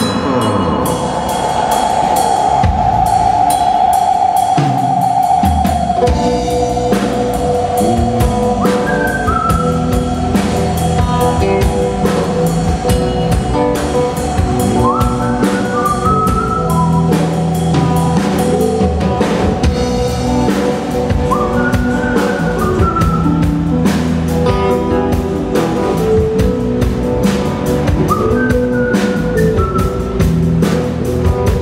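Live blues band playing an instrumental passage on electric guitar, keyboard and drum kit. It opens on a long held, wavering note, and the drums come in fully about six seconds in, with short rising licks over a steady beat.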